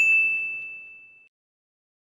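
A single bright ding from a logo-sting sound effect: one sharp strike that rings on a steady high tone and fades away within about a second and a half.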